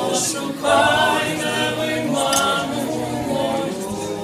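A male vocal quartet singing a cappella in harmony through microphones. The singing swells louder a little under a second in.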